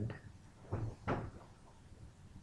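Two short knocks, about a third of a second apart.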